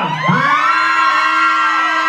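Club crowd cheering and whooping, with several long held yells overlapping.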